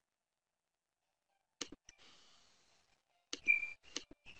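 A few sharp, isolated clicks on a mostly silent webinar audio line, each trailed by a faint fading hiss, with a brief high squeak among them near the end.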